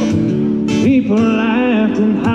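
A solo singer-guitarist performs a country song: a strummed acoustic guitar chord rings, and about a second in a male voice glides up into a held note with vibrato.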